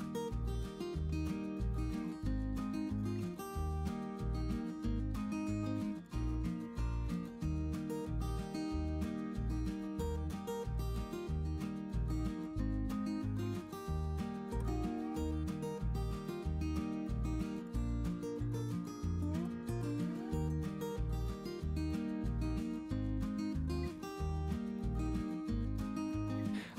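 Background music with a steady beat and a bass line under pitched instrumental notes.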